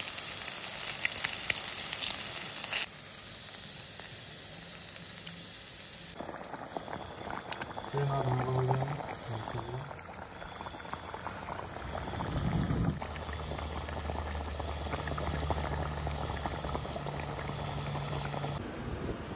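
Cooking sounds from a run of short clips with abrupt cuts between them. Turmeric-coated boiled eggs sizzle in hot oil, loudest in the first few seconds, and later an egg curry bubbles at the boil.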